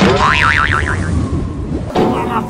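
Cartoon "boing" sound effect: a sudden twang whose pitch wobbles up and down about four times, then settles into a held tone that fades by about a second and a half in. It plays over steady background music.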